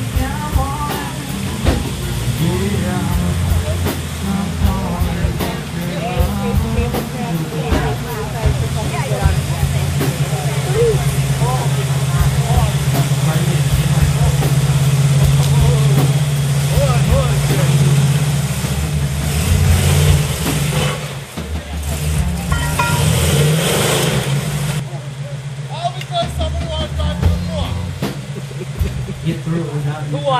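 Pickup truck engine running under load as the truck crawls up a rocky creek bed on a line from its front, while people talk close by. The engine drone builds through the middle, with a louder, noisier stretch about two-thirds of the way through before it eases off.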